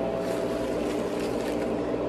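CoolSculpting fat-freezing machine running mid-treatment, a steady mechanical hum of several held tones.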